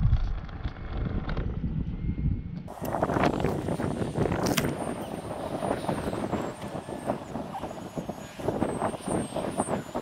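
Wind buffeting and rustling on the onboard camera's microphone as it lies in the grass, a steady crackle with many small clicks and no motor running.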